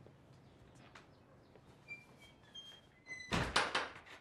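A wooden front door swung shut, with a short squeak just before it closes with a thunk about three seconds in. Faint small clicks and squeaks come before it.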